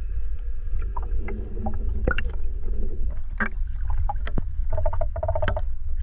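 Underwater sound picked up by a GoPro camera while snorkeling: a steady low rumble of water moving against the camera, with scattered clicks and crackles that grow busier in the second half.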